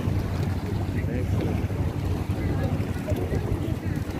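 Wind buffeting the microphone in a steady low rumble, with faint voices of people in the distance.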